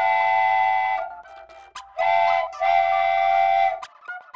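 Cartoon steam-train whistle sound effect: a chime whistle sounding several notes at once. A long blast ends about a second in, followed by a short toot and then another long blast.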